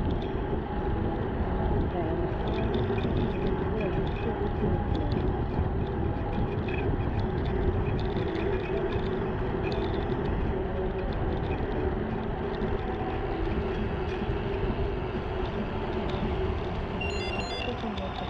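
Steady wind rumble on an action camera's microphone with tyre noise from a gravel bike rolling on wet tarmac.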